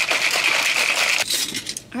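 A plastic shaker bottle being shaken hard, its mixer ball rattling rapidly inside. The rattling stops about a second in and is followed by a shorter burst.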